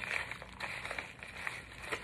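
Kraft-paper mailer envelope crinkling and rustling as it is handled and opened, with faint scattered crackles.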